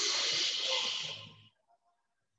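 A woman's long, breathy exhale, lasting about a second and a half before it stops.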